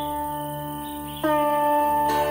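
Intro music on a plucked string instrument: one sustained note slowly fading, then a new note plucked a little past a second in, over a steady low drone.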